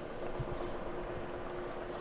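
Quiet outdoor background: a low steady rumble with a faint steady hum running through it.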